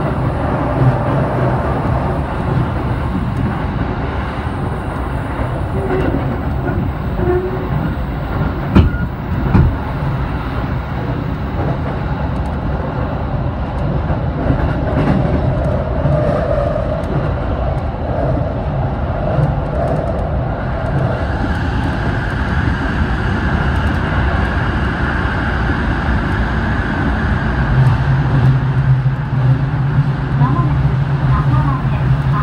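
Cabin noise of an E233-series electric commuter train running at speed: steady wheel-on-rail noise, with a few sharp knocks about nine seconds in. A steady high tone joins past the middle, and near the end the noise grows deeper and louder as the train runs into a tunnel.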